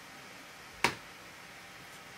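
A single sharp click about a second in, against quiet room tone: the click of pausing the video playback.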